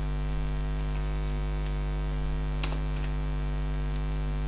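Steady electrical mains hum with its even overtones, picked up on the recording, with a few faint clicks.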